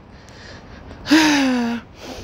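A woman's breathy, voiced sigh with a slowly falling pitch, lasting under a second and starting about a second in.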